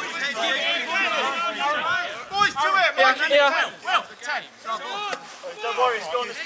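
Several men's voices calling and talking over one another, footballers' shouts and chatter on the pitch.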